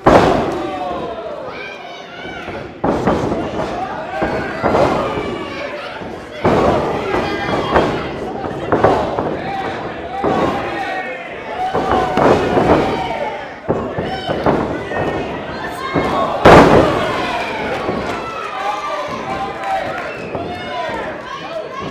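Heavy thuds of wrestlers hitting each other and the wrestling ring's boards and mat, the loudest at the very start and about sixteen seconds in, over steady crowd shouting and cheering.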